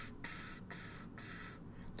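Faint scratching of a stylus on a drawing tablet as a hexagon is drawn, in a few short strokes separated by brief pauses.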